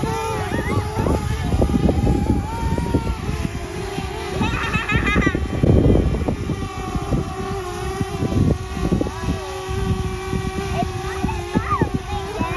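Small quadcopter drone hovering, its propellers making a steady whine that shifts slightly in pitch as it moves. A gusty low rumble of wind on the microphone runs underneath.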